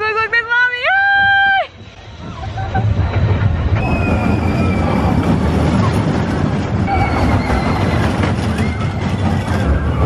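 A brief high voice, held on a rising note, in the first second and a half. Then the Barnstormer junior roller-coaster train rumbles along its steel track close by, rising from about two seconds in and staying loud, with faint wheel squeals now and then.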